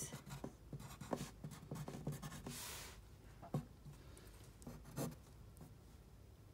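Graphite pencil writing on a paper worksheet: a quick run of short scratchy strokes as letters are written into crossword boxes, then a few isolated ticks of the pencil on the page.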